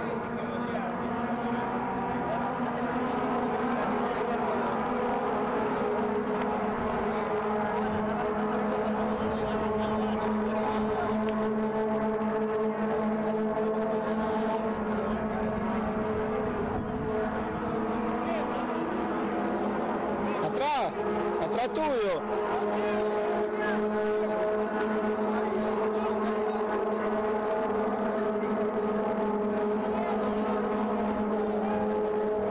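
A steady engine drone holds one pitch, with people talking over it. About two-thirds of the way in, a short wavering sound bends up and down in pitch.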